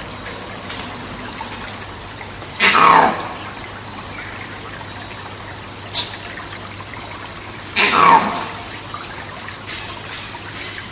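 Monkey screams in rainforest ambience: two loud calls, each about half a second long and falling in pitch, about three seconds in and near eight seconds, over steady background noise. A short sharp click sounds near six seconds.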